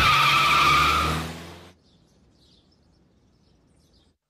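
Car peeling away with its tyres squealing over the engine, fading out within about two seconds, then near silence.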